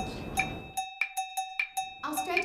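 Background music of quick percussive hits with a bell-like ring, like a cowbell pattern; the lower part drops away about halfway through, leaving only the hits.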